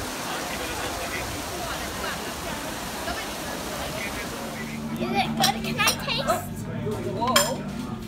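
Trevi Fountain's water running with crowd murmur. About four and a half seconds in this gives way to café sounds: glasses and dishes clinking among voices, over a steady low hum.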